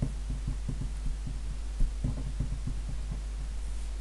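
Pen writing a short line of figures on a sheet of paper lying on a wooden desk, heard as a run of soft, dull, irregular taps. A steady low hum runs underneath.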